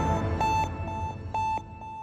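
Closing theme of a TV news programme ending in a string of short electronic beeps on one pitch, short and longer tones in an uneven rhythm, as the music fades away.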